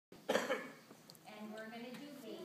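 A person coughs in two quick, loud bursts right at the start. Indistinct speech follows from a little over a second in.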